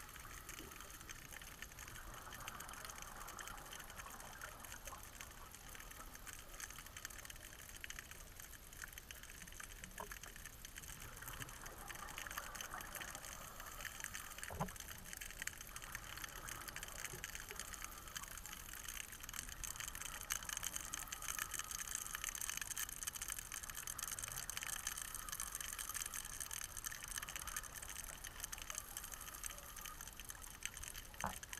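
Faint underwater ambience: a steady crackling hiss, with the rushing of scuba divers' exhaled bubbles swelling louder in the second half, and a couple of single clicks.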